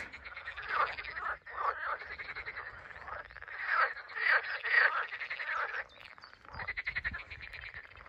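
A chorus of many frogs calling at once, dense overlapping rapid trilling croaks in full swing, swelling loudest around the middle and thinning briefly near the end.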